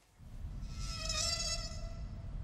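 A high, wavering whine made of several tones, swelling in the middle and fading, over a low rumble starting just after the beginning: a horror-trailer sound-design drone.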